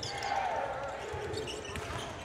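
A basketball being dribbled on a hardwood court: a few dull bounces, mostly in the second half, over a low murmur of arena noise.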